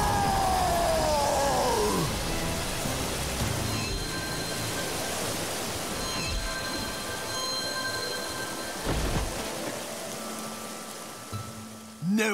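Cartoon water-blast sound effect, a dense rushing gush of water over action music, with a tone falling in pitch over the first two seconds; the rush slowly fades toward the end.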